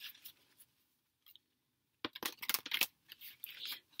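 Tarot cards being handled: after a quiet stretch, a run of short, crisp clicks and rustles over the last two seconds.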